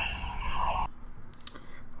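Low background noise with a few faint clicks and a faint steady hum in the second half.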